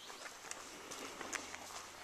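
Faint footsteps on a dirt forest trail, about two steps a second.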